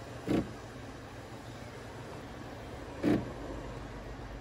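Frothed milk poured in a thin stream into a glass of espresso, over a steady low hum. Two short louder sounds come through, one just after the start and one near the end.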